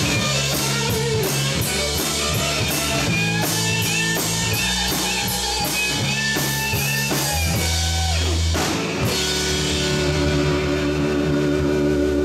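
Live rock trio of electric guitar, electric bass and drum kit playing an up-tempo song with a steady cymbal beat. About nine seconds in the cymbal beat stops and sustained notes ring on.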